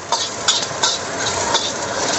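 Sliced ginger, shallots and chilli sizzling in hot oil in a wok, with a steel spatula scraping and stirring them in several quick strokes.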